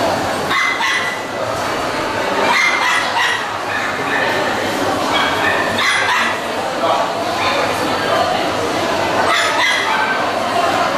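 Small dogs yapping in short bursts every second or two over a steady hubbub of many voices.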